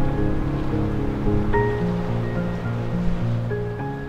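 Background music: slow, sustained notes that change pitch every second or so over a low, held bass.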